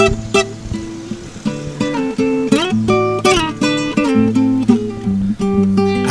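Acoustic guitar played solo, fingerpicked single notes and chords, as the instrumental introduction to a song. A couple of sharp chord strikes open it, then a plucked melodic line follows.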